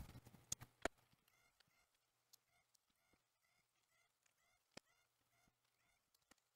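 Near silence, with two faint clicks within the first second and a very faint tick later on.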